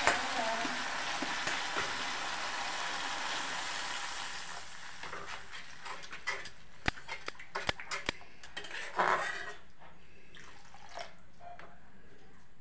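Masala gravy sizzling in a steel kadhai, the hiss fading over the first few seconds. A metal ladle then stirs and scrapes against the pan, with a string of sharp clicks and knocks and a louder scrape about nine seconds in.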